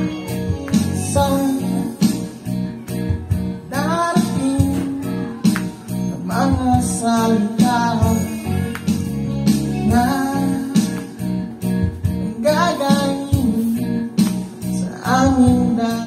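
A man singing into a wired dynamic microphone fitted with a replacement Loda L818 cartridge, amplified through a PA speaker over recorded accompaniment with guitar and a steady beat; a sound check of the repaired microphone. The sung lines come in phrases every two or three seconds, and everything stops abruptly at the end.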